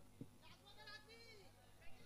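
Near silence, with a faint wavering high-pitched call about a second in and a couple of soft knocks.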